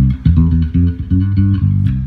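A Sire M7 five-string electric bass is played through an amp in passive mode, with its pickups switched to single-coil. It plays a quick run of plucked low notes, about four a second.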